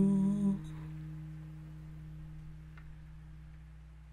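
A man's hummed note, held with vibrato, ends about half a second in. An acoustic guitar chord is left ringing and slowly fading.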